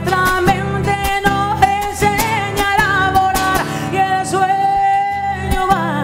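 A woman singing long, drawn-out notes with vibrato, accompanied by a strummed acoustic guitar.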